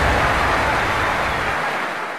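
Tail of a logo intro sound effect: a broad whooshing wash of noise slowly fading out, its low rumble dropping away near the end.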